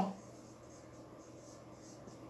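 A marker pen writing on a whiteboard, faint, in short strokes.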